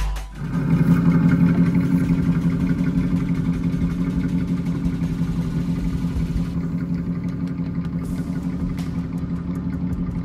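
Scale model Kaiser K-500 jetboat's drive running at a steady pitch as the boat cruises slowly on the water, a steady hum that eases slightly in loudness. Music cuts off at the very start.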